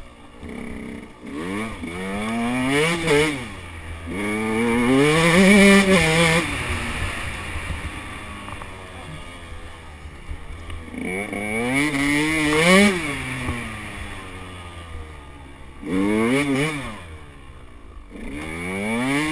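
KTM 125 EXC two-stroke enduro bike being ridden, its engine revving up and dropping back in four throttle surges as it climbs through the revs and falls off between them.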